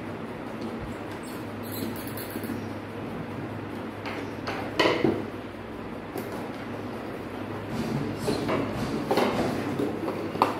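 Steady low hum with a few short knocks and clicks, the loudest about five seconds in and several more near the end, from hands handling wires, small switches and tools on a wooden workbench.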